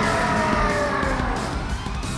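Animated dinosaur-like monster roaring: one long pitched cry that falls slowly in pitch, over dramatic background music and a deep rumble.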